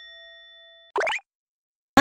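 Edited-in sound effects: a bell-like chime rings on and fades away, then about a second in a short pop that rises quickly in pitch.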